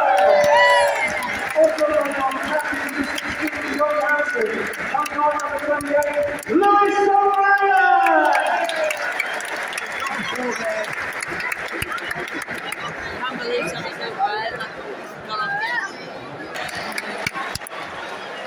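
Stadium football crowd chanting and singing, many voices together over a general roar; a loud held chant about six seconds in slides down and fades, and the crowd is quieter in the second half.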